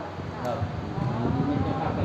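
A man's voice speaking Thai, with one long drawn-out syllable through the second half.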